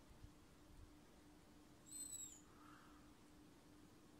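Near silence: faint background with a low steady hum, and one faint, short, high-pitched chirp that falls in pitch about two seconds in.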